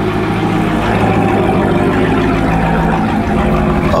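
Chevrolet Corvette C6 Z06's 7.0-litre LS7 V8 idling steadily after a cold start, a low, even drone.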